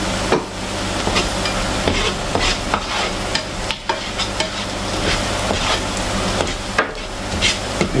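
Chopped onion sizzling in a frying pan while a slotted spatula stirs it, scraping and tapping against the pan again and again.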